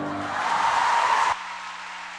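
Audience applause, cut off abruptly about one and a half seconds in, leaving a low steady hum.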